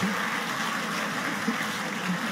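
Theatre audience laughing and applauding, a steady crowd noise with no single voice standing out.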